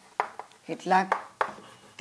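Chalk tapping and scraping on a blackboard in a few short, sharp strokes as words are written, with a brief murmur of voice about a second in.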